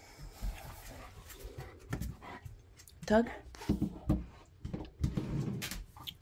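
A German shepherd panting and moving about, with a few soft knocks and low thumps. Near the end the dog tugs a mini fridge door open by a strap on the handle.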